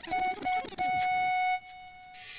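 Electronic beep tone in a mixtape intro: three short beeps, then one held for under a second before it fades, with a spoken voice sample underneath the first beeps.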